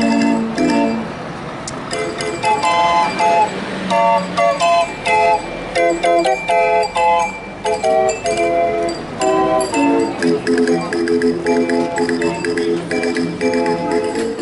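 Street barrel organ cranked by hand, playing a lively melody in held, pipe-like notes over a chordal accompaniment, with a steady beat of light percussive ticks.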